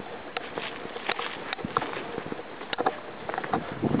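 Footsteps on a dry dirt track, heard as irregular light crunches and knocks over faint outdoor hiss.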